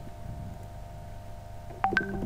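Computer keyboard keys clicking twice, sharply, near the end, over a steady low background hum.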